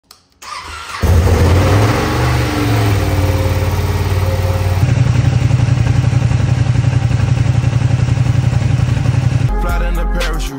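Ducati Panigale V2's V-twin engine starting from cold: the starter cranks briefly, the engine catches about a second in, and it then runs at a steady, pulsing idle.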